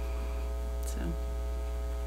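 Steady low electrical mains hum on the meeting-room microphone feed, with one short spoken word about a second in.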